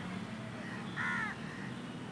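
One short bird call about a second in, a single arching cry over steady background noise.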